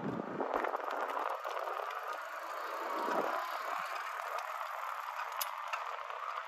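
Steady rolling noise of a bicycle riding on pavement, with a few light clicks and rattles.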